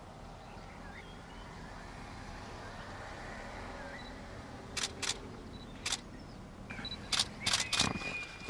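Camera shutter clicks: single frames about five and six seconds in, then a quicker run of shots near the end, over a steady low rumble.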